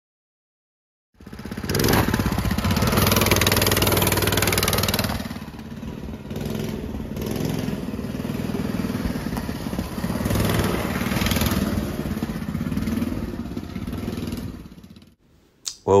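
Small gas engine of a mini bike running as it is ridden, coming in about a second in and swelling and easing as the throttle changes.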